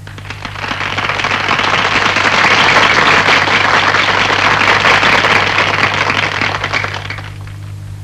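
Audience applauding, the clapping swelling over the first couple of seconds and fading out about seven seconds in.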